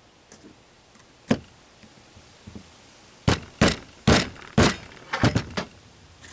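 Sharp knocks on a soft pine block as a CCI shotgun primer is seated into a Federal shotshell hull's primer pocket without a press: one light tap about a second in, then a quick run of about six louder knocks over two seconds.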